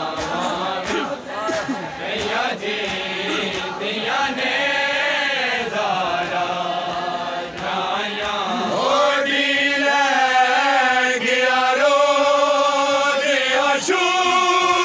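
A group of men chanting a noha, a Shia lament for Bibi Zainab, in unison with no instruments. The voices glide and waver at first, then from about nine seconds in settle into long held notes.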